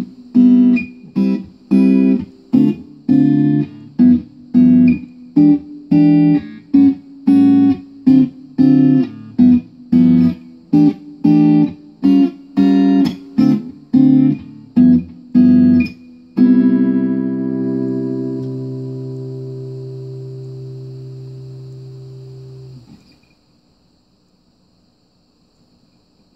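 PRS P22 electric guitar with the neck humbucker blended with its piezo pickup, played through Fender '68 Deluxe and Mustang III amps: a steady run of short, clipped chords, then a final chord left ringing for about six seconds before it is muted shortly before the end.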